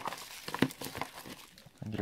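Plastic packaging crinkling and rustling, with a few short clicks, as cables in plastic bags are lifted out of a cardboard box. It dies down toward the end.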